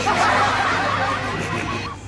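High-pitched, cartoonish giggling laughter, a string of quick repeated 'hehe' sounds that stops just before the end, over quiet background music.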